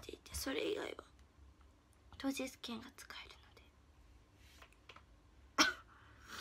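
A young woman speaking softly, close to a whisper, in two short phrases, then a single sharp cough near the end.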